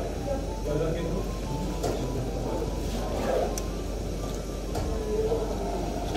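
Background chatter of people talking in a café, faint and indistinct, over a steady low hum.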